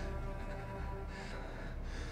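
Dramatic background score of sustained low tones, with a person's sharp breaths about a second in and again near the end.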